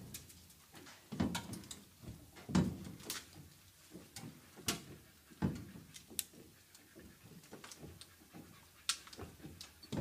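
Porta Power hydraulic body ram being pumped to push a car's pillar outward: a scatter of short, irregular clicks and knocks from the pump and the loaded metal, a second or so apart.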